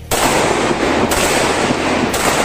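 Glock 17 9mm pistol fired in rapid succession, the shots running together into one continuous loud crackle that starts suddenly just after the beginning.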